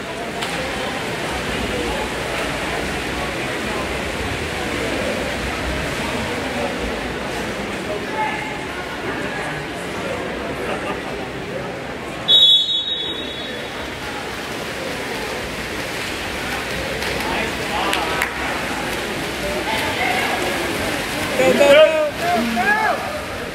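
Water splashing and voices echoing around an indoor pool. About halfway through comes a referee's whistle blast, a single short shrill tone, and near the end there are shouts.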